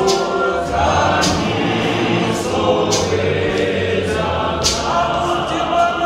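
Zion church choir singing a gospel hymn, a woman's voice leading through a microphone, with sharp percussive strikes every second or two.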